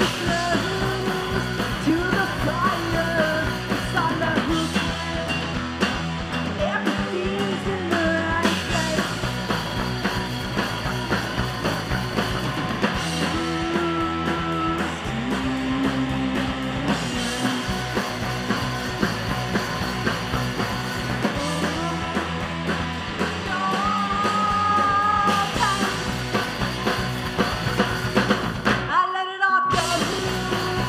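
A live rock band playing: a woman's lead vocal over electric guitar, bass guitar and a drum kit. The whole band stops for a brief break just before the end, then comes back in.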